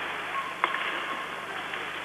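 Ice hockey arena ambience during play: a steady crowd murmur with a few sharp clicks of sticks on the puck, and a brief faint tone about half a second in.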